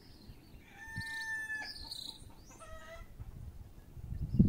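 A rooster crowing, starting about a second in, followed by a shorter call near three seconds.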